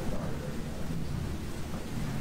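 Steady low rumble of room noise with indistinct chatter from people talking in the background.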